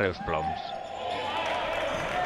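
Natural sound of a basketball game in a sports hall: the ball bouncing on the court under a steady din from the hall, after a narrator's last spoken word at the start.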